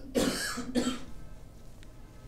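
A man coughing twice in quick succession, a longer breathy cough and then a short one with a little voice in it.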